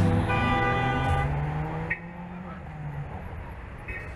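Background music fades out in the first second or two. It gives way to the steady hum of city street traffic, cars driving by.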